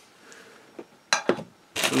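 A faint rustle, then a few quick sharp clicks about a second in, as plastic model tank track links and their plastic bag are handled and set down on the work mat.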